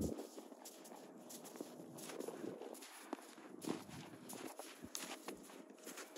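Horses walking through snow close by: faint, irregular hoof footfalls.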